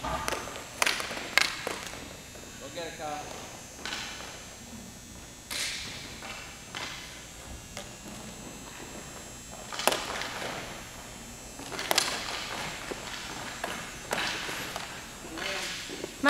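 Hockey sticks striking a puck on a rink floor: a handful of sharp clacks scattered through, the loudest about ten and twelve seconds in. Faint children's voices in the background.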